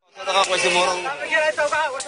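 People's voices talking in the field recording, over a steady background hiss, starting a moment after a brief dropout at the cut.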